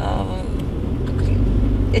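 Steady low road and engine rumble inside the cabin of a moving Toyota car.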